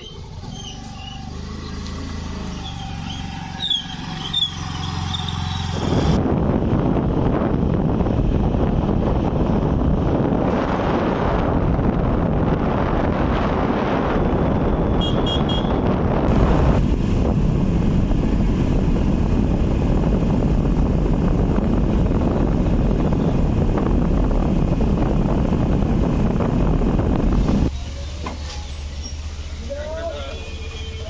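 Motor scooter on the move: a steady engine hum, then from about six seconds in a loud, even rush of wind over the microphone that covers most of the engine, dropping near the end to a quieter steady hum.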